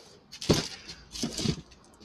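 Handling noises: a sharp knock about half a second in, then a few brief clattering, rustling sounds.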